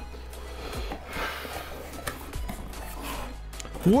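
Background music under the rustle and scrape of a cardboard box lid being pulled open by hand.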